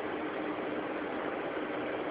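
Steady background hiss with a faint, even hum underneath: the recording's room tone, with no other event.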